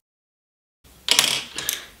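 Total silence for almost a second where the audio is cut, then about a second of clicking and rustling handling noise, with two sharper clicks.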